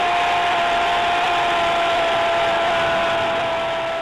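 Stadium crowd roaring after a home goal, with one long, steady, unwavering note held above the roar.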